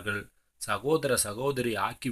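Speech only: a voice reading aloud in Tamil, with a brief pause about half a second in.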